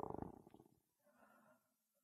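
Near silence in a pause of microphone-amplified speech, with a brief faint low rattle in the first third of a second.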